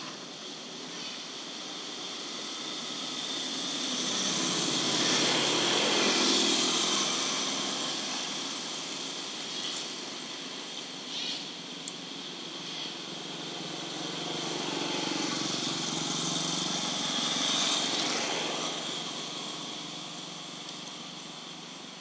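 Passing road vehicles: a steady background of traffic noise with two slow swells that build and fade over several seconds, the louder about six seconds in and another about three-quarters of the way through.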